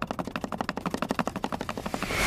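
A rapid, even train of sharp clicks, about fifteen a second, like a fast ticking build-up in film-trailer sound design.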